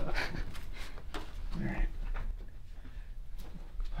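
Faint, brief murmurs and breaths from people in a small room, growing quieter in the second half.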